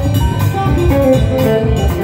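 Live rock band playing an instrumental passage: an electric guitar runs a quick melodic line of short notes over a drum kit keeping a steady beat, with no singing.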